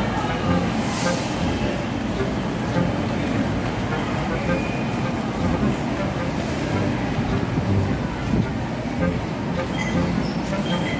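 Busy station-concourse ambience: a steady din of indistinct voices and traffic noise.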